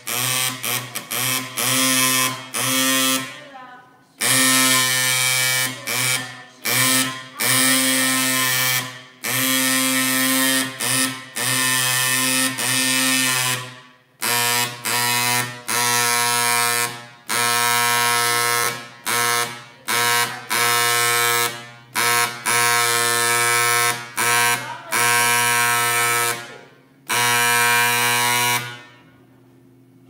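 A PEQD-200E dot peen marking machine's stylus hammering rapidly into a carbon steel plate, making a loud, steady-pitched buzz. The buzz comes in bursts broken by short pauses as the head moves between strokes, and it stops shortly before the end when the marking is finished.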